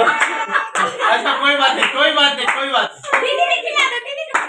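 Hand clapping mixed with several children's voices talking over one another.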